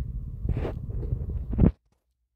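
Low rumbling handling noise on the microphone, with a few soft knocks, that cuts off abruptly about three-quarters of the way through into silence.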